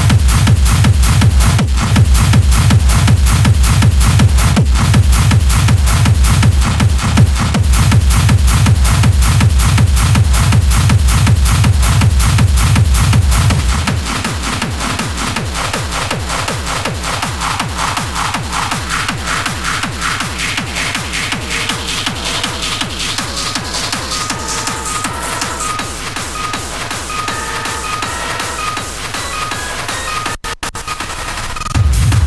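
Hard techno: a fast, steady kick drum with heavy bass, which drops out about halfway through into a breakdown of lighter percussion and short synth notes, with a rising sweep building near the end.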